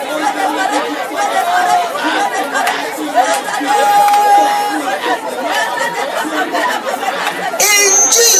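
A congregation praying aloud all at once, many voices overlapping in a steady loud babble. Near the end a single louder voice breaks in over them.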